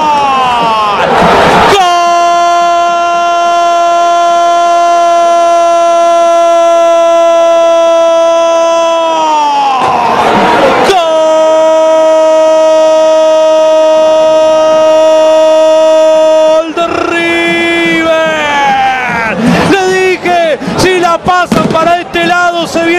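Football commentator's long drawn-out goal cry, "gooool", held on one high note for several seconds, twice over, each hold sliding down in pitch at its end with a breath between. Near the end he breaks into fast, excited talk.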